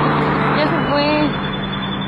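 Steady road and engine noise heard inside a moving car, with a low hum under it, and a person's voice speaking over it.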